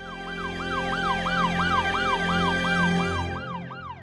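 Emergency siren in a fast yelp, its pitch rising and falling about three times a second, over a steady low hum.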